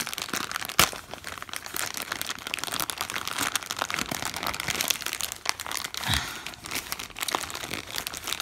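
Thin plastic packaging crinkling and crackling as hands work open a white poly mailer bag and pull out the wrapped item, with one sharp snap about a second in.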